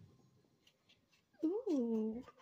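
One drawn-out, meow-like call that rises and then falls in pitch, starting about a second and a half in after near quiet.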